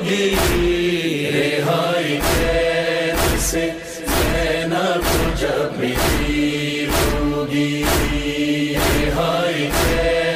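Male voice reciting a Shia noha in long, drawn-out chanted lines, over a steady beat of heavy thumps about once a second in the style of matam, the rhythmic chest-beating of mourning.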